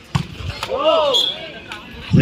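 A volleyball being struck by hand during a rally: sharp smacks just after the start and again near the end, with a drawn-out shout in between.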